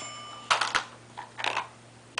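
Hard plastic toy pieces knocking and clattering, twice, as a child handles a toy village, with a short bell-like ring dying away in the first second.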